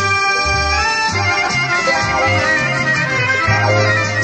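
Instrumental passage of an Albanian folk song: a reed instrument plays a melody of held notes with a few slides in pitch, over a stepping bass line.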